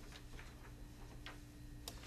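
Quiet room tone: a steady faint electrical hum with a few faint, scattered ticks, such as papers and pens being handled at a table.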